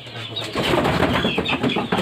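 Bangkok and pakhoy chickens calling in a coop. About half a second in, a loud, rough rustling flurry starts and runs on, with short high calls over it.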